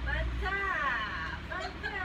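People's voices in a room, with one high voice gliding up and down for about a second in the middle.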